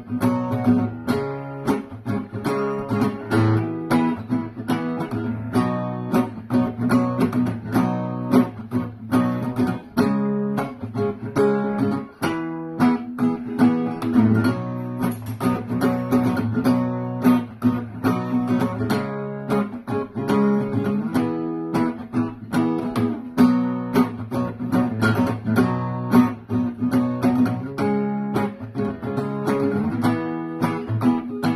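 Acoustic guitar playing an instrumental solo break in a song, with a steady rhythm of strokes and no singing.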